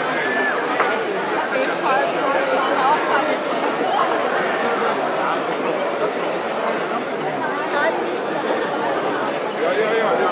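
Crowd chatter: many people talking at once in an indistinct, steady babble of voices.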